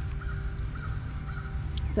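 A bird calling three times in short, evenly spaced notes, over a low steady rumble.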